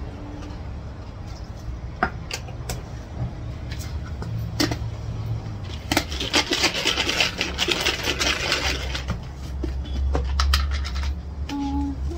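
Lidded glass jar of churro snacks, chopped vegetables and sauce being shaken to mix, a dense rattle and slosh lasting about three seconds midway, after a few separate clinks against the jar. A steady low hum runs underneath.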